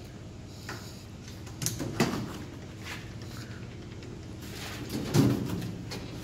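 Steel electrical control-cabinet door being unlatched and swung open: sharp latch clicks about two seconds in, then a short knock near the end.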